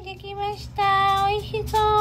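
A high-pitched voice singing a few short, held notes, the longest about a second in.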